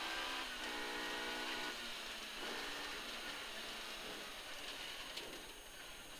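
1440cc 16-valve four-cylinder Mini rally engine running under power, heard from inside the cabin, its note strongest in the first two seconds and growing gradually quieter toward the end, over a steady hiss of tyres on the wet road.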